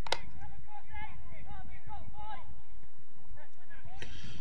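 Football pitch ambience: faint voices of players calling out across the field over a steady low rumble, with one sharp knock right at the start.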